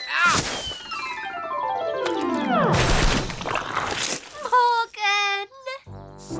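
Cartoon sound effects: a crash, then a long descending whistle like something falling through the air, ending in a loud crash about three seconds in. A short wobbly vocal or musical sting follows near the end.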